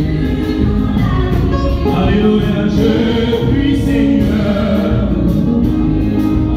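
Gospel worship song sung by a group of voices, with long held notes.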